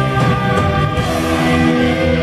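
Live doom metal band playing loud, with distorted electric guitars and bass holding sustained chords that shift about a second in.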